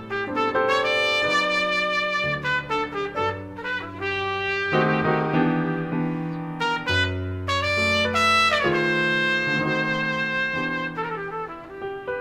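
Slow jazz ballad: a trumpet plays a melodic line of long held notes over piano and bass.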